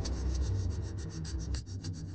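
Serial background score: a low steady hum under a quick, dry, rasping tick rhythm, after a held chord has just ended.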